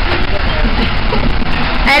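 Steady low rumble of a moving coach bus, engine and road noise heard from inside the cabin, with people talking faintly in the background.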